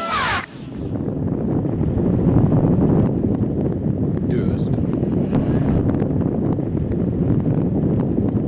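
Trophy truck running hard on a dirt course, its engine and tyre noise mostly buried in heavy wind buffeting on the microphone, with scattered clicks. Music cuts off right at the start, and a brief shout comes about halfway through.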